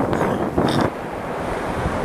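Wind buffeting the microphone over surf washing on a beach; the gusting eases to a quieter, steadier rush about a second in.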